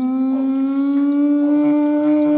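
A person holding one long howl-like vocal note, its pitch slowly creeping upward.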